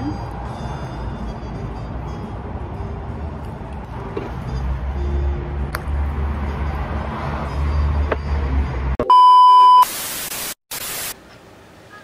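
Low outdoor traffic rumble for about nine seconds, then a loud steady electronic beep tone lasting under a second, followed by a burst of static hiss that cuts out briefly and returns: an edited beep-and-static transition effect.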